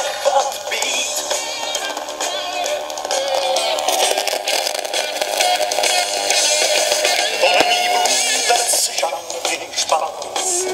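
A song with a singer played from a 45 rpm vinyl single on a Tesla NZC 041 turntable, heard through one small speaker, thin and with almost no bass. This is the turntable's left channel, which the owner says crackles and plays noticeably quieter, and which he suspects of a faulty potentiometer.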